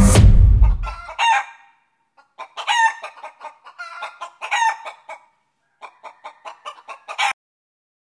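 Background music fading out in the first second, then a chicken clucking in several short bursts of calls, which cuts off abruptly near the end.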